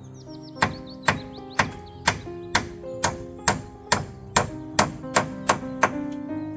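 Hammer blows on a nail in a wooden post, about thirteen sharp strikes at roughly two a second, quickening slightly near the end. Background music plays underneath.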